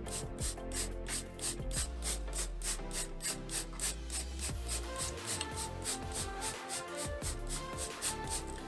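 Hand trigger spray bottle squeezed over and over, each pull giving a short hiss of water mist at about four a second, wetting the soil over freshly sown seeds.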